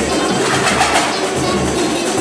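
Live samba percussion group playing: a steady beat of surdo bass drums with shakers and small percussion over it, and some gliding pitched sounds in the mix.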